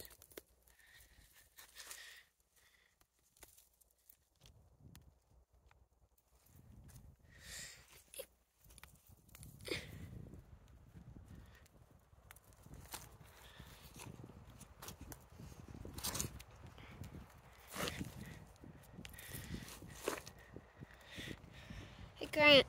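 Faint, scattered rustling and crunching of weeds being pulled up by hand and feet shifting over dry leaf litter and soil, with a few sharper clicks.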